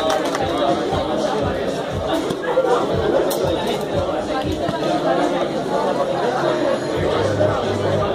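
Crowd chatter and background music in a large hall, with a cocktail shaker rattling its ice in the first few seconds.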